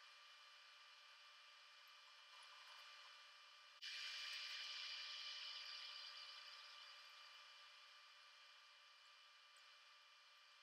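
Near silence: faint steady room-tone hiss. About four seconds in, a louder hiss starts abruptly and fades away over the next few seconds.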